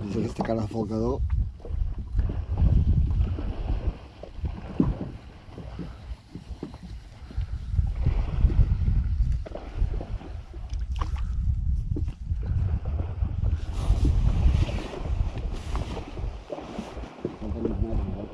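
Wind on the microphone as an uneven low rumble aboard a small inflatable boat at sea, with water against the hull, and a few sharp clicks about eleven to twelve seconds in.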